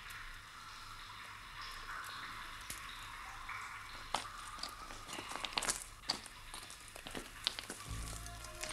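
Quiet film soundtrack of water dripping in a rock-walled mine: scattered drips and small clicks over a steady hiss, growing busier in the second half.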